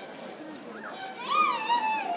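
Audience murmuring in a theatre auditorium, with a high gliding cry starting a little past halfway that rises briefly and then falls away.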